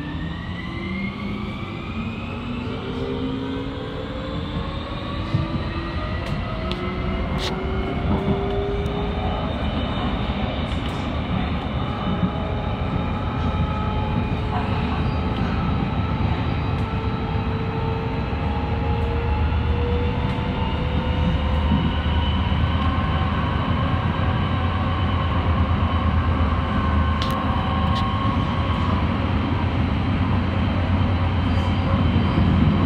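Amsterdam metro train heard from inside the car as it accelerates away from a station: the traction motors' whine rises in several pitches over the first ten seconds or so, then holds steady at speed over wheel-on-rail rumble, with a few sharp clicks from the track. The running grows a little louder toward the end.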